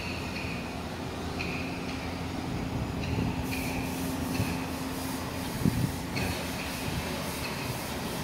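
Steady background noise with a low, even hum, broken by a few short high-pitched chirps or squeaks and one brief knock.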